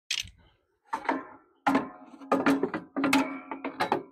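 A steel exhaust pipe being worked loose from a Briggs & Stratton overhead-valve lawn-tractor engine, clanking against the metal around it. There are about six knocks, each with a short metallic ring.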